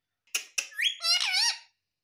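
Indian ringneck parrot calling: two sharp clicks, then a rising whistle that runs into a wavering, warbling note lasting about a second.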